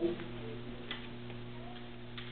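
Steady electrical hum from the hall's amplified sound system between words, with a faint click about a second in.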